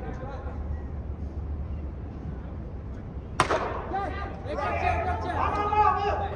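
A single sharp crack of a cricket bat striking the ball about halfway through, ringing briefly in the large domed hall, followed by several players shouting.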